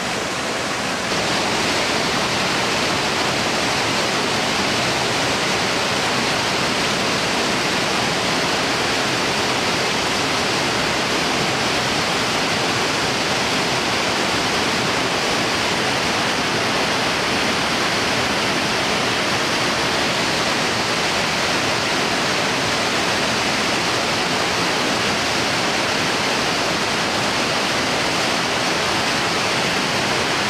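Jog Falls, a tall waterfall on the Sharavathi River: a steady rushing of falling water that gets a little louder about a second in.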